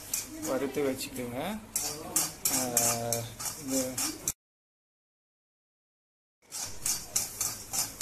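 A steel spatula scraping and stirring dry split moong dal (pasi paruppu) in a stainless steel kadai, quick repeated strokes as the dal is roasted on medium flame, with a voice talking over the first half. The sound cuts out completely for about two seconds just past the middle, then the stirring resumes.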